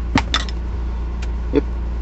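Steady low hum of a 4th-gen Nissan Maxima's engine idling, heard from inside the cabin, with a sharp click near the start and two lighter taps later.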